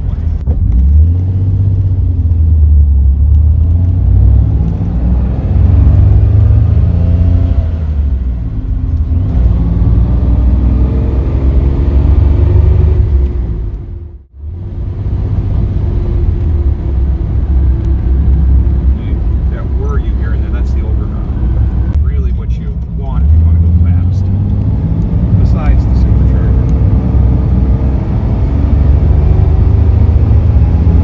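Inside the cabin of a 1939 supercharged Graham four-door sedan under way: its straight-six engine running with a steady low drone over road noise, the engine note rising and falling as it accelerates and eases off. The sound drops out for a moment about halfway through.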